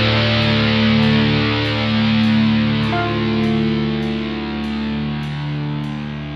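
Progressive death metal: distorted electric guitar chords held and ringing out, over light ticks about twice a second. It slowly gets quieter.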